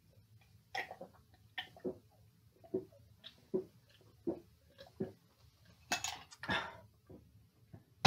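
A person chugging a glass of Coca-Cola: a run of separate swallowing gulps, roughly one every three-quarters of a second, then about six seconds in two longer, noisier sounds as the drinking ends.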